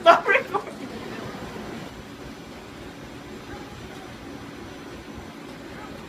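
A person's voice in short laughing bursts in the first half second, then a steady background noise with no distinct events.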